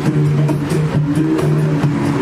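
A cappella group of women singing in close harmony over a held low bass line, with vocal percussion keeping a steady beat of sharp hits.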